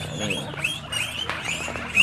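Guinea pigs squeaking in their hutches: many short, rising high-pitched calls, several a second.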